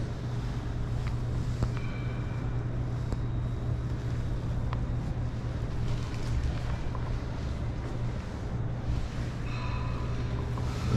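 Steady low hum under faint background noise, with a few light clicks.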